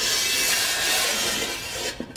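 A steady rubbing noise, mostly high-pitched, easing off slightly near the end.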